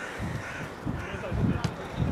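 Players' distant shouts and calls across an outdoor football pitch, with the sharp thud of a ball being kicked about one and a half seconds in.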